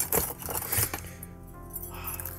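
Metal hand tools clinking and rattling against each other as a hand rummages in a crowded aluminium tool case, several clinks in the first second, over steady background music.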